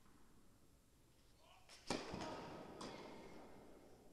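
Tennis racket striking the ball hard about two seconds in, the crack echoing through the indoor hall, followed by two lighter knocks of the ball.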